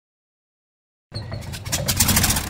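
Silence for about a second, then a transition sound effect swells in: a whoosh with a fast, engine-like buzz, growing louder near the end.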